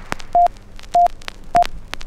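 Three short, high, steady beeps about half a second apart, over a scattering of crackles and pops.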